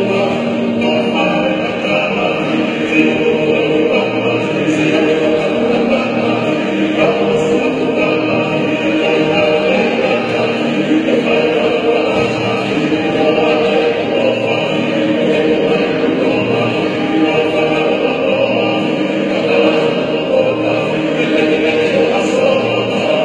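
A group of Tongan men singing a hiva kakala, a Tongan love song, together in harmony, accompanied by strummed acoustic guitars; the singing is continuous and even.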